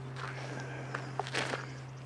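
Footsteps of someone walking, with a few light clicks and knocks, loudest about a second and a half in, over a steady low hum.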